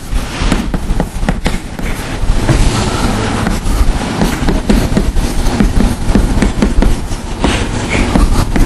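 Hand-writing on a board: a busy, irregular run of taps and scratches with no speech.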